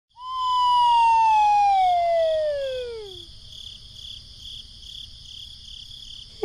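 A siren-like tone slides steadily down in pitch over about three seconds and then stops. A faint high chirping pulse repeats about three times a second throughout.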